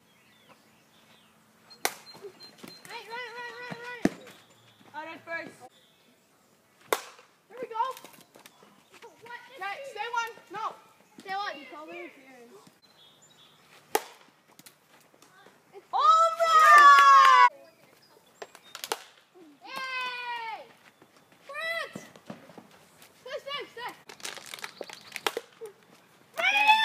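Boys shouting and calling out in short bursts; the loudest is a long yell about two-thirds of the way through. Between the shouts come about five sharp clacks of a plastic wiffle bat hitting the ball.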